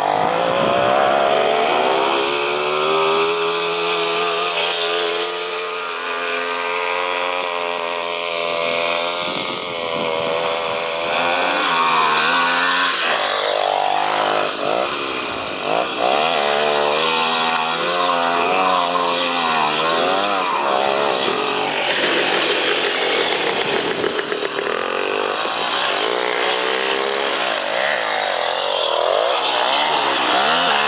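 Small two-stroke motorcycle engine revving hard, its pitch rising and falling over and over as the throttle is worked.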